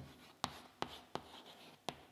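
Chalk writing on a chalkboard: about five sharp taps of the chalk against the board, with faint scratching between them.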